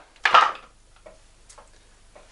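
A stone-weighted wooden deadfall mousetrap springing: the mouse reaches the trigger bar and the rock drops onto the wooden base with one sharp knock about a quarter of a second in. A couple of faint clicks follow.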